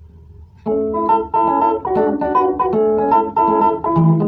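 Electronic keyboard with an organ-like voice begins playing about a second in: a rhythmic run of melody notes over sustained chords, after a faint low hum.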